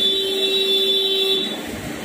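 A vehicle horn sounding one steady held note for about a second and a half, then cutting off.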